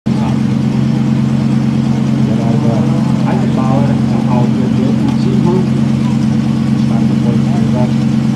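Lamborghini Huracán Super Trofeo Evo's naturally aspirated V10 idling steadily at the start line, with voices talking faintly over it in the middle.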